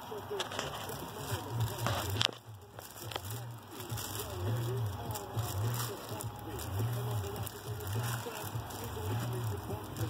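Packaging being handled at close range: scattered rustles, crinkles and clicks. A faint voice murmurs underneath.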